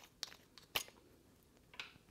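The screw-on top cap of a Coast WPH30R LED headlamp being unscrewed from its battery compartment: a few faint clicks and scrapes, the loudest a little under a second in.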